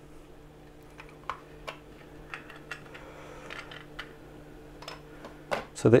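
Light, irregular clicks and taps of a plastic LED torch housing being handled and pried apart at its snap-fit clips, over a faint steady hum.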